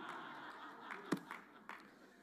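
Faint laughter and murmuring from a congregation, dying away after about a second, with a single sharp tap near the middle.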